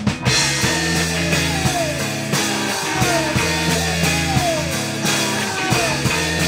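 Rock band playing live on drum kit, electric guitar and electric bass. The full band kicks in with a cymbal crash right at the start, and a sliding line that falls in pitch recurs about every second and a half.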